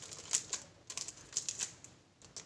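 Fingers tapping and pressing on the plastic shrink-wrap of a cardboard box, the wrap crackling in a handful of sharp, irregular clicks.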